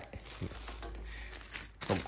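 Clear plastic bag crinkling as a boxed-up knife sharpener wrapped in it is picked up and handled, with a few small clicks.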